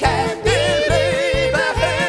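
Singers with broad vibrato, in a showy chanson-schlager style, over a band with a steady drum-and-bass beat; one long note is held through the middle.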